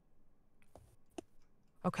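A couple of faint, sharp clicks about half a second apart over low room hiss, then a voice starts near the end.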